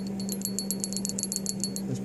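Small metal bell, a relic dug up while metal detecting, jiggled between the fingers so its clapper tinkles rapidly with a high, thin ring. The tinkling stops shortly before the end.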